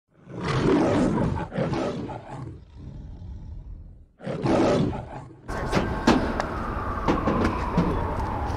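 Lion roar sound effect played twice over the intro logo, a long roar trailing off into a rumble and then a shorter one. About five and a half seconds in it cuts to outdoor street noise with sharp clicks and a long, slowly falling whine.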